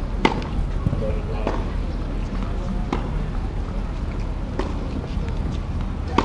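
Tennis balls being struck with rackets in a practice rally: sharp pops of ball on strings about every second and a half, over a murmur of voices.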